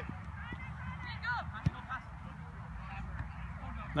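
Faint, distant short calls over a low outdoor background rumble, with one sharp knock a little under halfway through, typical of a soccer ball being kicked on turf.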